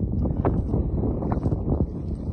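Wind buffeting the microphone: a steady low rumble, with a few faint short ticks over it.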